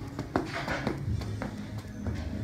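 Sneakers striking a rubber gym floor in the quick skipping steps of an A-skip drill, a few sharp taps a second. Background music plays underneath.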